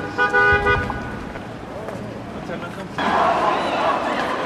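A car horn sounds once, a steady tone lasting under a second near the start, over the noise of a street crowd. About three seconds in, the crowd noise suddenly gets louder.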